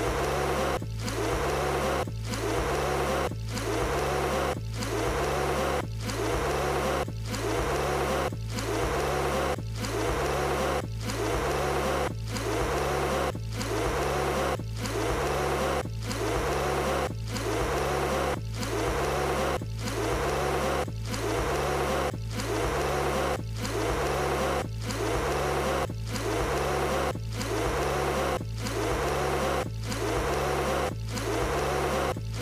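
A cartoon woman blowing on a bowl of hot soup over and over, a breathy blow about once a second, each cut off by a short gap as the clip loops. Background music with a low bass line plays underneath.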